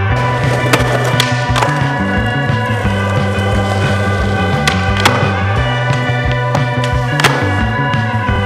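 Skateboard wheels rolling on concrete, with several sharp clacks of the board striking the ground, over loud psychedelic rock music.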